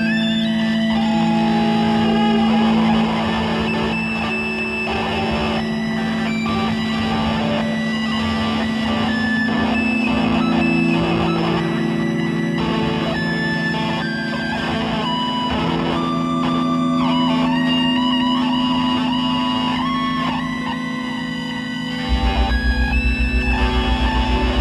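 Improvised electric guitar duet of sustained droning tones, with scattered higher notes and effects. About 22 s in, a low, fast-pulsing tone comes in and the music gets louder.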